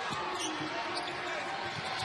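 Basketball dribbled on a hardwood court, faint bounces over the steady murmur of an arena crowd.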